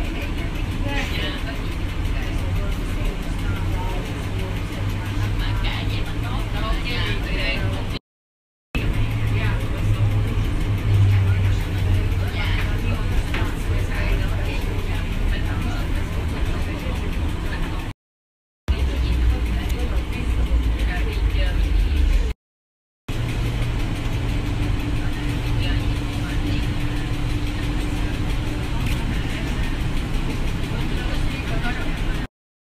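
Interior of a NAW trolleybus on the move: a steady low electric drive hum with road rumble, and indistinct voices in the cabin. The sound drops out briefly three times.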